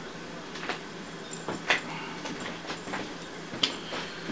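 Low room noise with a few faint, sharp clicks, the last one near the end.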